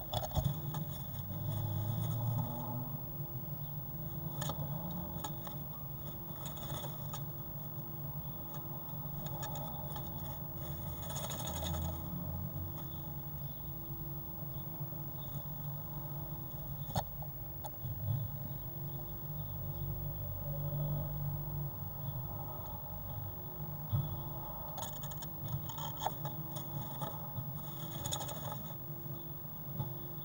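Blue tit moving about inside a wooden nest box, scratching and rustling the moss-and-grass nest lining in scattered bursts of scraping and clicks, over a steady low hum.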